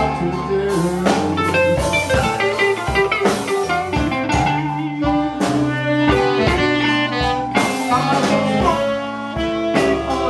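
Blues band playing live, with saxophones over a steady drum beat.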